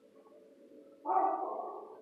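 A dog gives one drawn-out pitched call, lasting about a second and fading out, starting about a second in.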